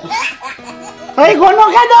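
A man bursts into loud, drawn-out wailing, a mock crying fit, starting a little over a second in, over soft background music.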